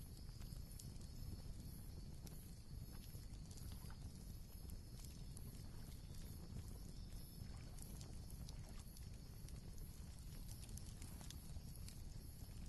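Faint wood fire crackling, with irregular sharp pops and snaps over a low steady rumble.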